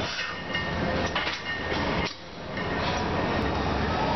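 Steady din of a busy gym, with a couple of short metal clanks about a second in as a loaded barbell is lifted out of a squat rack.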